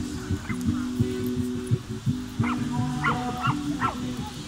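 A small dog yipping in a quick run of short, high calls in the second half, over music with steady low held notes.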